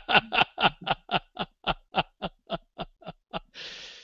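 A man laughing: a run of short chuckles, about five a second, fading away and trailing off into a breathy "uh" near the end.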